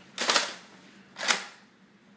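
Spring-powered Nerf dart blaster being worked and fired. There are two short, sharp bursts about a second apart, the second one briefer.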